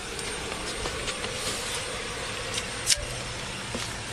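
Steady background noise of a vehicle running, picked up by a police body-worn camera, with rustling and a few light clicks as a seat belt is handled; the sharpest click comes about three seconds in.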